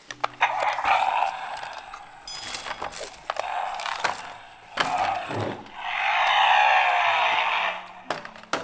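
A plastic toy Batmobile being handled, with clicks and rattles of its plastic parts, and three stretches of rushing noise: a short one near the start, a brief one midway and a longer one near the end.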